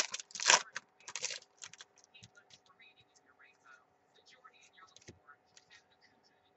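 Trading cards being flicked through by hand: quick scraping and snapping of card stock, busy for about the first second and a half, then only a few faint ticks.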